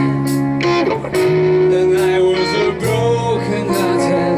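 A live band playing: electric guitar holding long notes over bass and drums, with regular drum hits marking the beat.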